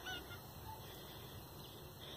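Faint outdoor background with a brief, distant bird call near the start.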